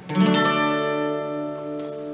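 Sunburst acoustic guitar strummed once, the opening chord left to ring and slowly fade, with a light brush of the strings near the end.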